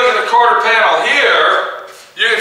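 A man talking, with pauses; the only sound here is his voice.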